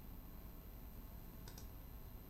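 A couple of faint computer mouse clicks about one and a half seconds in, over low room noise.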